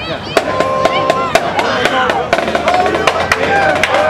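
Marching band drumline playing a sparse cadence of sharp stick and rim clicks, with voices shouting and whooping over it.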